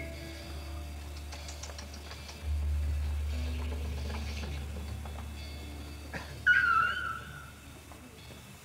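Live rock band in a quiet passage: a low sustained bass note rings, is struck again about two and a half seconds in, and is joined by sparse faint instrument notes. Near the end a sudden loud high note sounds, slides slightly down and dies away as the music fades.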